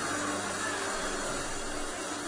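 Steady, even rushing noise with faint held low tones underneath, the sound of a hall full of people praying aloud together.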